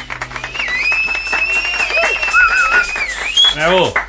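A few people clapping by hand in a small room at the end of a song, with a long high whistle held over the clapping for about two seconds, and a short vocal shout near the end.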